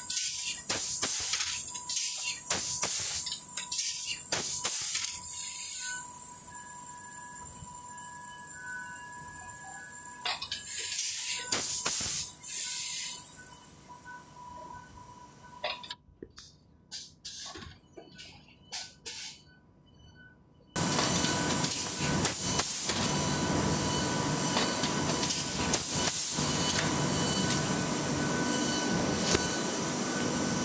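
Book binding machine running in a bindery, its clamp carrying book blocks: repeated clacks over a steady high hiss and a thin steady whine. The sound drops away to near silence for a few seconds about halfway through, then a louder, denser steady machine noise comes back.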